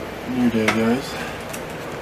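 Window blinds clicking and clinking as they are pulled open by hand, with a short vocal sound from a man about half a second in.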